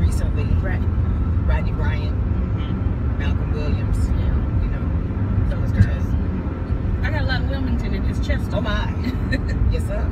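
Steady low rumble of a car on the move, heard from inside the cabin, with indistinct talking over it, busiest near the end.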